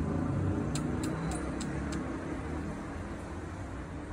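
Motor vehicle engine running nearby: a steady low rumble that fades slightly, with a few faint ticks about a second in.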